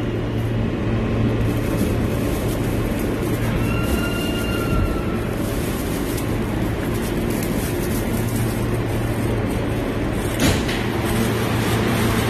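Steady rumble and hum of a New York City subway car running, heard from inside the car. A brief high whine about four seconds in and a sharp knock near the end.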